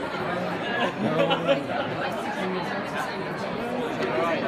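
Indistinct chatter of many people talking at once, with one nearer voice coming up louder for a moment about a second in.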